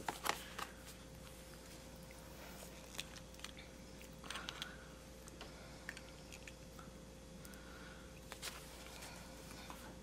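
Quiet desk handling sounds: notebook pages being turned, then a fountain pen being handled, giving a few soft clicks and short rustles over a faint steady hum.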